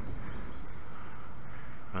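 Steady background noise of a rocky seashore, an even hiss with no distinct events.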